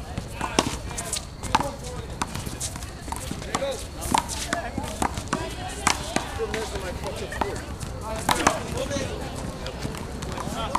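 One-wall handball rally: a small rubber ball being slapped by hand and smacking off the concrete wall and court, heard as irregular sharp smacks about one or two a second. Faint voices of onlookers talk underneath.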